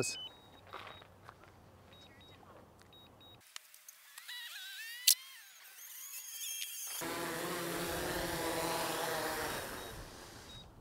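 DJI Mavic 3 Thermal quadcopter's propellers humming as it comes down to land under return-to-home, the hum wavering in pitch and growing louder over the last few seconds before easing off. A few short high beeps sound in the first seconds, and a sharp click about five seconds in.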